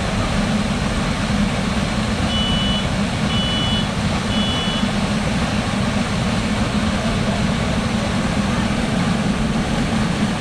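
Steady rush of water flowing through a ProSlide water coaster's channel, with a low drone under it. Between about two and five seconds in, three short high electronic beeps sound about a second apart.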